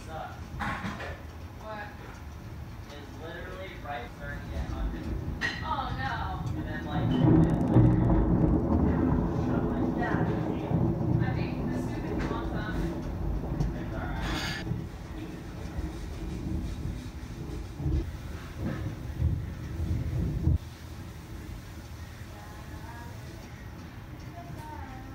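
Thunder rumbling during a thunderstorm. It builds, is loudest a few seconds in, rolls on with rises and falls for over ten seconds, then cuts off suddenly near the end.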